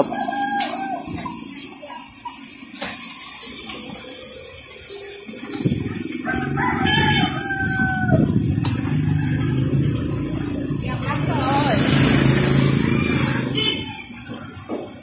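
A rooster crowing twice: a short call just after the start, then a longer crow of about two seconds around the middle, over a steady background of street noise.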